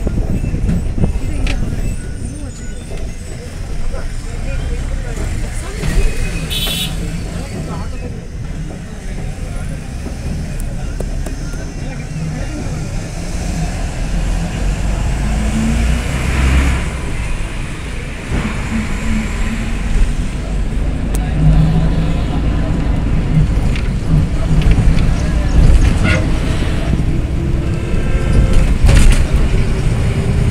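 Engine and road rumble of a moving road vehicle heard from inside at an open window, with wind on the microphone. A short horn toot comes about six and a half seconds in, and the engine note rises near the end.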